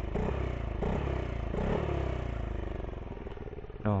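Yamaha Aerox 155 scooter's single-cylinder engine revved through a 3Tech Ronin Hanzo aftermarket exhaust switched to its silent mode: three quick throttle blips, each rising and then falling away, before it settles back toward idle.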